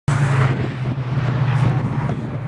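A car engine droning at a steady pitch, with rough wind noise on the microphone.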